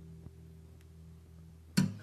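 Last chord of an acoustic guitar ringing on as steady low tones, with a couple of faint ticks. Near the end a sudden loud thump cuts the chord off.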